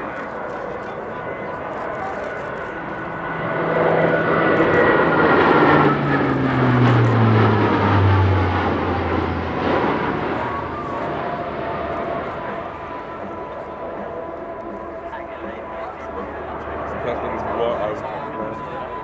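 Alenia C-27J Spartan's twin Rolls-Royce AE 2100 turboprops during a fast, low display pass. The propeller drone swells to its loudest a few seconds in, drops in pitch as the aircraft goes by, then settles to a quieter steady drone as it banks away.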